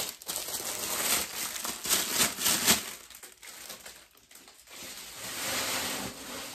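Thin clear plastic bag crinkling as it is handled, in loud bursts over the first three seconds, then fainter rustling.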